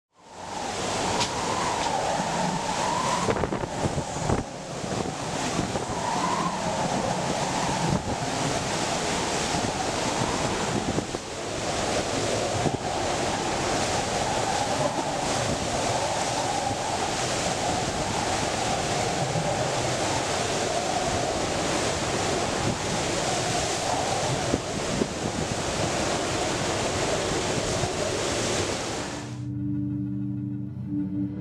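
Hurricane wind and driving rain: a dense, steady rush of noise with gusts buffeting the microphone and a wavering howl. It fades in at the start and cuts off just before the end.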